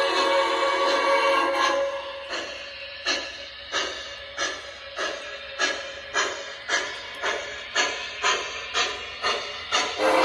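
MTH Premier Empire State Express model steam locomotive's Protosound 3 sound system chuffing as the locomotive pulls away. The puffs begin about two seconds in and quicken from a little over one to about two a second as it gathers speed.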